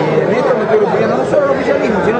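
Several people talking at once in a room: steady crowd chatter of overlapping voices.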